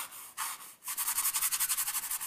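Paintbrush scrubbing oil paint onto a stretched canvas while laying in a sky: a few separate strokes, then from about a second in a quick, even run of short back-and-forth strokes.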